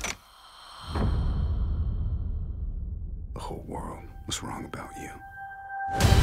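Film-trailer sound design: a deep low drone starts about a second in, under high ringing tones that fade away. Breathy voice sounds come a little past the middle, and a loud hit lands at the very end.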